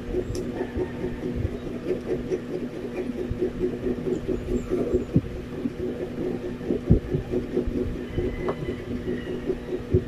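A fork clicking and scraping against bread and a jar of spread while a sandwich filling is spread, with a sharp click near the middle and another just before the end. A steady low hum with a rhythmic throb runs underneath.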